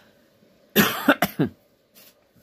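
A woman coughing, a quick run of about three coughs about a second in.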